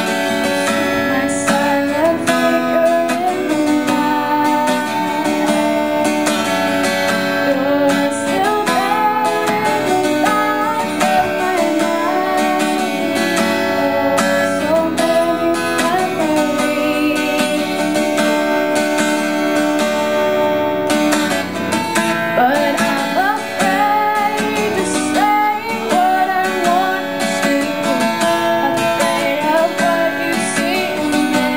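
A woman singing to her own strummed acoustic guitar, solo and live, the voice carrying the melody over steady chords.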